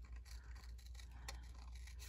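Small scissors faintly snipping through patterned paper in short, scattered cuts while fussy-cutting around a heart shape.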